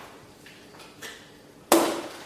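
A single sharp knock near the end, like a hard object striking a table, with faint handling noise before it.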